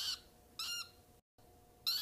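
Small pet parrot giving short, high chirping calls: two about half a second apart at the start and another near the end.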